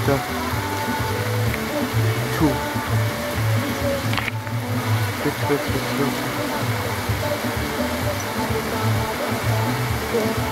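Torrential rain pouring down in a steady rushing hiss, with music and talk playing underneath. One brief sharp click comes about four seconds in.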